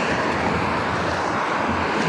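Steady rush of road traffic noise from a vehicle passing close by.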